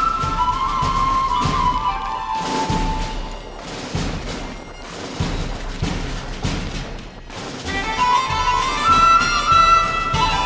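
A pipe band playing: bagpipes carry a reedy melody over steady drum beats from snare and bass drums. The pipes fade out about two seconds in while the drumming keeps going, and the pipe melody comes back in about eight seconds in.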